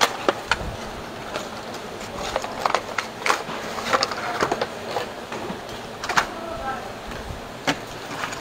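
Makeup packaging being handled and set down on a table: scattered sharp clicks and light knocks of cardboard boxes and plastic cases, with faint voices in the background.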